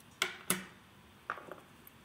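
A few light clicks and taps of wristwatches being handled: a steel-bracelet watch set down on a wooden desk and a steel-cased, suede-strapped watch lifted from its box onto the wrist. Two sharper clicks come near the start and two softer ones follow past the middle.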